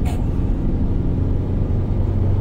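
Mercedes-Benz Sprinter 313 van's diesel engine and tyres heard from inside the cab while cruising: a steady low drone and road rumble.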